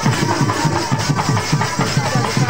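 Festive dance music: quick, even drumbeats, about five a second, under a faint reedy wind-instrument melody.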